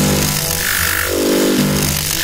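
Loud synthetic sound effect that starts abruptly: a harsh hiss with repeated falling tones, like an electronic scanning or processing noise, over a low music bed.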